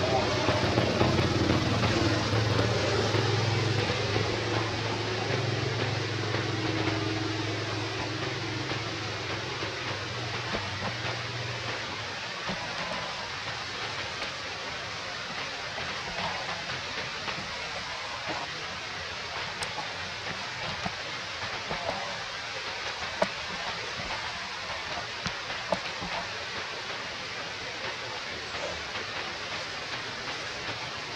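A low hum fades out over the first twelve seconds or so, over a steady outdoor hiss, with a few faint sharp clicks later on.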